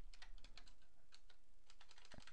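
Computer keyboard keystrokes: a quick, uneven run of faint key clicks as a command is typed and deleted.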